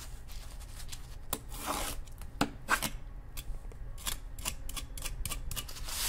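Box-cutter blade scraped and dragged across a chainmail glove: a run of irregular light metallic clicks and short scrapes as the blade rides over the steel rings without cutting through.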